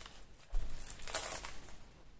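Paper craft pieces handled on a desk: a soft bump about half a second in, followed by a second or so of paper rustling.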